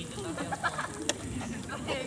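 Low, indistinct talk from people nearby, with a single sharp click about halfway through.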